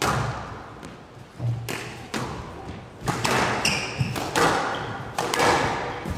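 Squash rally: a string of sharp knocks about once a second as the racket strikes the ball and the ball hits the court walls, with a brief high squeak near the middle.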